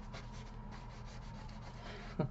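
Quick, even rubbing strokes on cardstock, about six a second.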